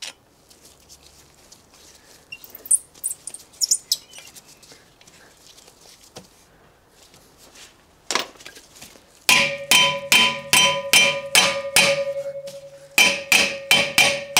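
Hammer striking at the hub of a newly fitted vented rear brake disc, about three blows a second, with the cast-iron disc ringing after each blow. The blows begin about two-thirds of the way in, stop briefly and start again. Before that there are only a few faint clicks of tool on metal.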